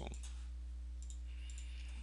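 A few faint, scattered computer mouse clicks over a steady low electrical hum.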